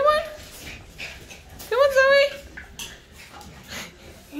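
A dog whining twice: a short rising whine at the start, then a longer one about two seconds in that rises and holds its pitch.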